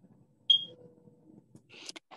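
A single short, high electronic beep about half a second in, over faint low background murmur; a breath or the start of speech comes just before the end.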